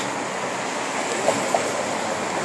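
Steady rushing outdoor background noise with no distinct sounds standing out.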